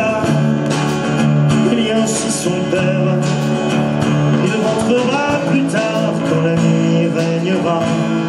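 Live band music: acoustic guitars played over a drum kit and keyboard, with held notes running under the whole passage.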